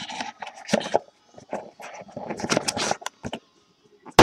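Trading cards and their packaging being handled: irregular scraping and rustling with small clicks.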